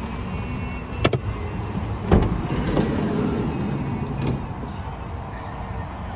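A click, then the van's side sliding load door thuds and rolls open along its track for about two seconds, ending in a click as it stops.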